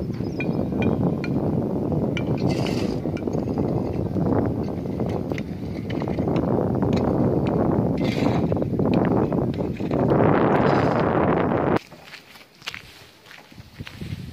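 Wind buffeting the microphone: a loud, rough rumble that rises and falls, cutting off abruptly near the end. After it, a much quieter stretch with scattered sharp clicks and knocks.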